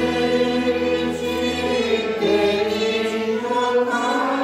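Congregation singing a hymn together in chorus, many voices holding long, slowly changing notes.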